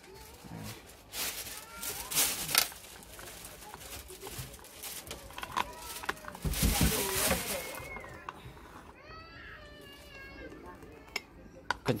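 Knocks and clinks of a Bialetti Alpina aluminium moka pot being put together, then a longer scraping rasp partway through as the upper chamber is screwed down onto the base and tightened.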